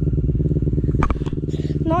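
Engine of an off-road vehicle idling steadily, with an even pulsing beat, and a short voice sound about a second in.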